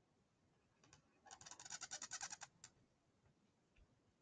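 Marker scratching on paper as a rectangle is drawn: a faint run of quick rasping strokes starting about a second in and lasting about a second, with a light tap just before and after.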